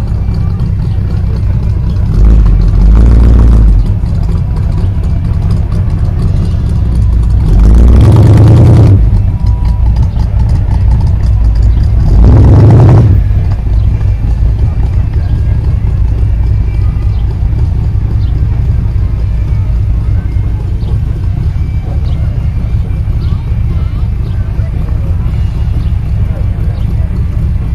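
Outdoor background noise: a steady low rumble with three louder surges in the first half, and voices in the background.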